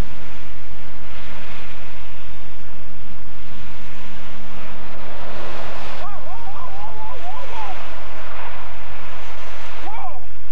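Motorway traffic on a wet carriageway: a hiss of tyres through surface water that swells and fades as vehicles pass, over a steady low hum.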